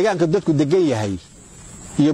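A man's voice speaking for about a second, then a pause filled by a faint, steady hiss.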